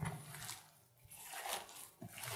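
Faint squelching and crunching of sliced raw onion and pork pieces being squeezed and kneaded by hand, in two strokes about a second apart. The onion is being crushed to release its juice into the marinade.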